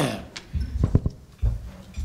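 A few dull knocks and thumps close to the lectern microphones as a speaker arrives at the podium: about half a second in, a quick pair about a second in, and a low thump about a second and a half in.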